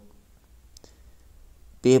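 A short pause in spoken Hindi narration with a couple of faint clicks, then the narrating voice starts again near the end.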